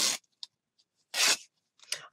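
Plaid cotton fabric being ripped by hand into a strip: a tearing rip that ends just after the start, then a second short rip about a second in.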